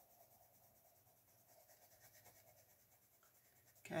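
Faint scratching of a Crayola Colors of the World coloured pencil shading on paper.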